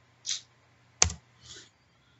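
A single sharp click from a computer keyboard about a second in, the key press that advances the presentation slide, with two brief soft hisses either side of it.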